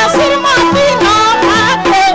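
Live Nepali lok dohori folk music: a gliding, wavering melody over a repeating rhythmic accompaniment.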